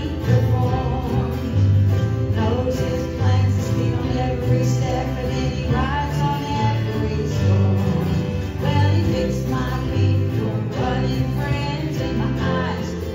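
A live gospel song played by a small church band, with acoustic and electric guitars and steady bass notes under a sung vocal line.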